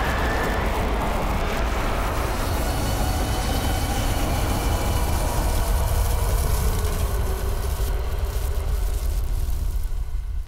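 Flamethrower jetting fire in one long continuous burst: a loud, steady rushing noise with a heavy low rumble, stopping at the very end.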